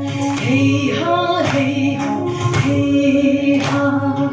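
A woman singing solo into a handheld microphone, in long held notes that slide from one pitch to the next.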